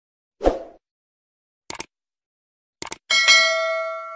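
Sound effects of a subscribe-button animation: a soft thump, then two quick double clicks about a second apart, then a bell ding, several steady tones, that rings on and slowly fades.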